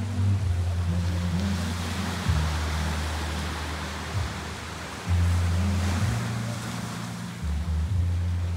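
Small waves washing onto a sandy beach, the surf swelling twice, with music playing over it, its deep bass notes held and changing every second or two.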